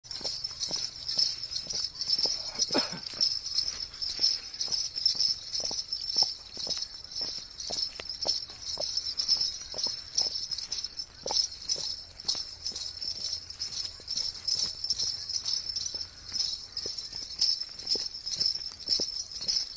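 A horse's hooves striking a gravel road in a steady gait, several sharp knocks a second, over a continuous high-pitched shimmering whirr.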